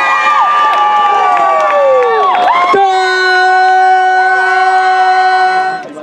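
Several horns blown together, their notes sliding down in pitch, then one horn holding a single steady note for about three seconds before cutting off, over crowd cheering.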